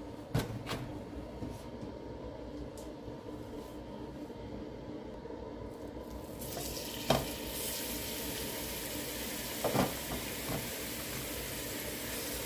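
Seasoned raw pork dropped by hand into hot oil in a nonstick frying pan. A few light clicks come first; about six seconds in, the meat hits the oil and a steady sizzle starts, with a couple of soft knocks as more pieces land.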